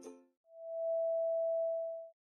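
The tail of strummed ukulele-like intro music dies away, then a single steady electronic test-tone beep, the kind played with TV colour bars, holds for about a second and a half and cuts off.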